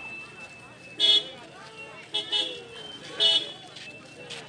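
Busy market street with crowd chatter, cut by three short, loud vehicle horn toots about a second apart.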